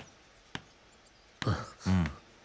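Two faint clicks, then a man's voice in two short, low utterances near the end.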